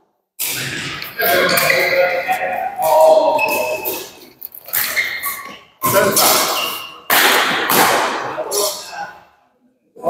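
Badminton play in a large, echoing indoor hall: several sharp hits that ring on in the echo, mixed with voices.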